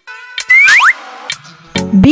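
Cartoon 'boing' sound effect: two quick upward pitch glides about half a second in, over children's background music, with a percussive hit near the end.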